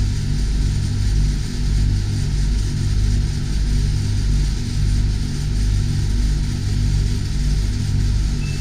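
Marine air-conditioning units running: a steady low hum that throbs about once a second, with a fainter hiss of air from the cabin vent.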